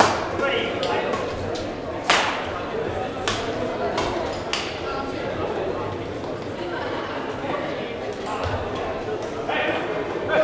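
Badminton rackets hitting a shuttlecock during a rally: several sharp cracks in the first half, the loudest about two seconds in. Beneath them runs a steady murmur of voices echoing in a large sports hall.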